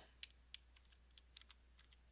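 Faint computer keyboard keystrokes: a handful of scattered, widely spaced clicks as an equals sign is typed into a spreadsheet cell.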